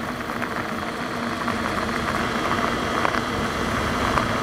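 Fat-tyre electric mountain bike running under throttle on a gravel path: a steady electric-motor whine over the noise of the wide tyres rolling on gravel, with small crunches and wind.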